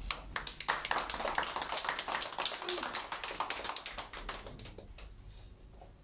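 Applause from a small group of people in a small room, dying away over the last couple of seconds.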